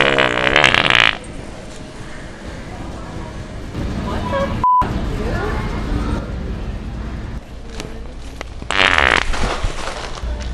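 Two loud wet prank fart noises: one in the first second and another about a second long near the end. Midway a short censor bleep cuts through a bystander's swearing.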